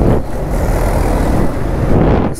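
Steady rush of wind and road noise from a KTM Duke motorcycle riding in city traffic, with no single engine note standing out.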